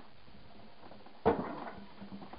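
A single sharp knock of a hard object about a second in, followed by a few fainter clicks over the next half second.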